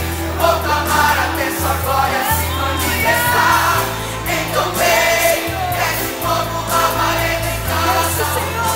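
Live gospel song: a female soloist singing through a microphone with a choir, over a band accompaniment with a steady bass line that moves in sustained notes.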